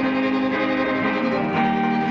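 Violin and guitar playing a folk song together, the violin holding long bowed notes over the guitar. The notes change about one and a half seconds in.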